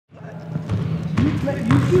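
A basketball bouncing on a hardwood gym floor: three bounces about half a second apart.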